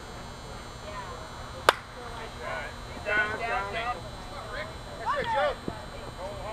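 A slowpitch softball bat hitting the pitched ball: one sharp crack about a couple of seconds in, followed by players' voices shouting.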